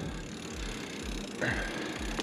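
Mountain bike rolling along a dirt trail: steady tyre-and-trail noise with low pulses about three times a second. A thin high tone joins about two-thirds of the way in.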